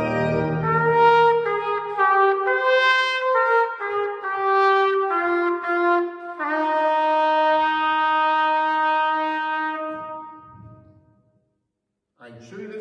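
Solo trumpet playing a hymn melody in separate notes, ending on one long held note that dies away in the church's reverberation.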